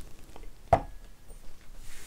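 A stemmed glass tasting glass set down on a small wooden coaster, one sharp knock about three-quarters of a second in, with a brief faint ring after it.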